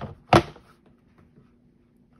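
Hard plastic cutting plates of a Sizzix Big Shot set down on one another: a light click, then one sharp clack about a third of a second in.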